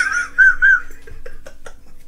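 The tail of a high-pitched laugh: two short squeaky pulses that rise and fall, about a third of a second apart, followed by a few faint clicks.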